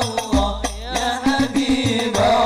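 Hadrah al-Banjari ensemble performing sholawat: male voices chanting in Arabic over frame drums, with a deep bass-drum stroke about a third of a second in.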